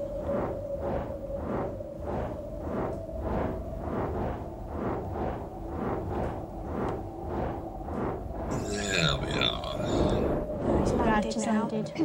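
Sound effects for a flying dragon: a steady droning hum with rhythmic pulses about twice a second, then a louder, rougher growling call with sliding pitch from about nine seconds in.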